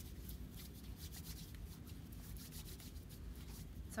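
Hands rubbing together with hand sanitizer gel for hand hygiene: a faint, steady rustle of palms and fingers.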